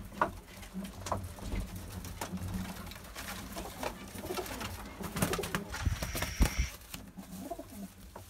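Domestic pigeons cooing in a low, steady murmur. Sharp knocks and scuffling come in bursts about five to seven seconds in, as a pigeon is grabbed by hand.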